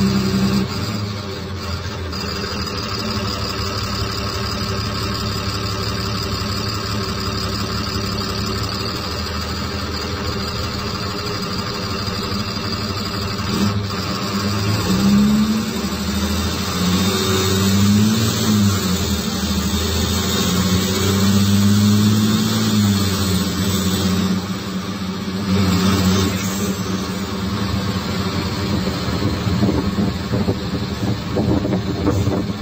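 Cummins ISBe 6.7 straight-six turbodiesel of a city bus, heard on board: running steadily for about half the time, then rising in pitch and dropping back about three times as it accelerates through the gears of its automatic gearbox, with the turbo whining over it.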